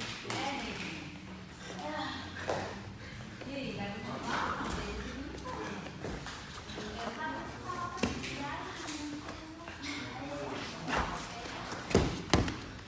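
Indistinct voices in a large room, with a few dull thuds of bodies shifting and rolling on a training mat during a grappling demonstration.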